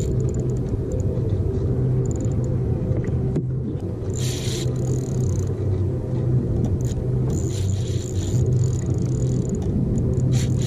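Steady low rumble of wind and sea buffeting an action camera on a kayak. Over it come short high-pitched buzzes, about four seconds in and again near the end, from the spinning reel as a hooked kingfish pulls against the drag.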